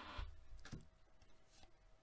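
Faint handling of hockey trading cards: a short rustle of cards sliding against each other as the stack is cycled, then two light clicks of card edges.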